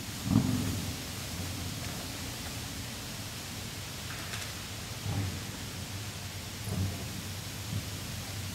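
Low steady rumble from wind and handling on a handheld camera's microphone as it pans, with a few soft thumps: one just after the start, then others about five, seven and nearly eight seconds in.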